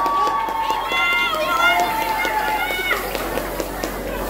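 A crowd of voices, with one or two voices calling out over the murmur for about the first three seconds, then quieter talk.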